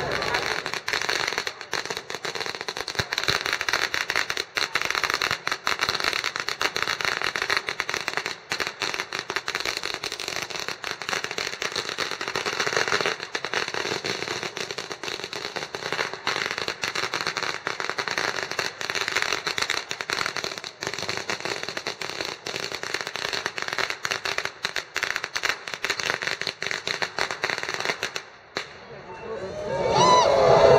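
A long string of firecrackers going off in a rapid, continuous crackle that stops shortly before the end.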